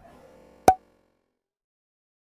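A single sharp pop, less than a second in, a sound effect marking the freeze frame, after which the audio cuts to dead silence.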